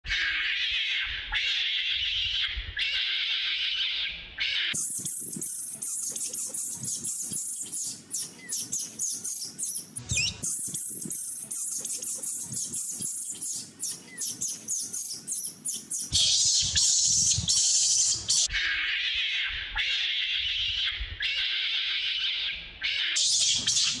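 A young macaque crying loudly in repeated harsh, high calls. The cries stop about five seconds in and come back, louder, at about sixteen seconds. In between there is a stretch of dense clicking and crackling.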